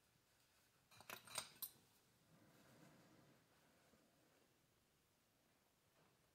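A quick run of about five light metallic clicks about a second in, as small metal RC diff parts are handled in a microfibre towel, followed by faint rubbing of the cloth; otherwise near silence.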